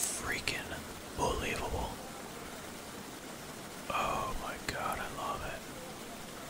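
A steady rush of water pouring out of a freshly unclogged culvert pipe, under hushed, whispery voices that come and go three times.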